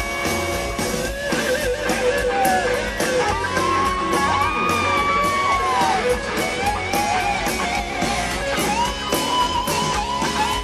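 Live rock band playing: a lead electric guitar line with long string bends and vibrato over a steady drum beat and bass.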